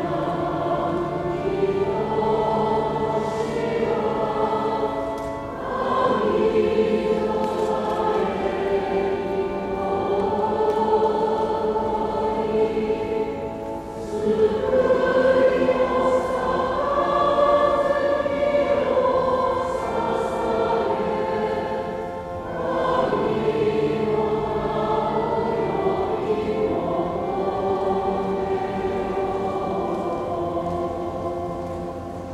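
A choir singing a sacred piece in long held phrases, with short breaks for breath about every eight seconds.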